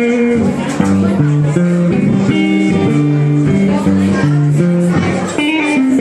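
Electric guitar played live: picked notes over a low bass line that moves to a new note about every half second.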